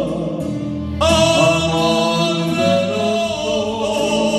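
Two men singing together into microphones, holding long notes with a wavering pitch, with a new, louder phrase starting about a second in.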